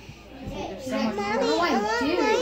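A short lull, then a young child's voice talking, rising and falling in pitch.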